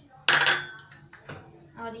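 A metal spoon clinks sharply against a glass bowl with a brief ring, then a lighter tap about a second later, as spice is added to batter.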